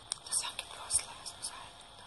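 Two people whispering: hushed, breathy speech with sharp hissing s-sounds in a few short spurts.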